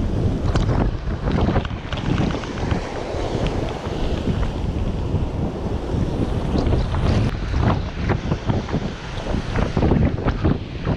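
Strong wind buffeting a GoPro's microphone, rising and falling in uneven gusts, over surf washing onto the beach.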